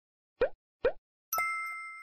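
Cartoon sound effects for an animated logo: two quick rising pops about half a second apart, then a bright bell-like ding that rings out and fades over about a second.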